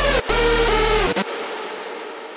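Electronic dance-music synth lead with a steady sub bass playing, layered with reverb. The playback stops about a second in, and the reverb tail rings on alone, fading out slowly.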